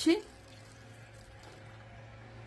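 Milk pouring from a carton into a plastic blender jar onto chocolate powder: a faint, soft pour over a steady low hum.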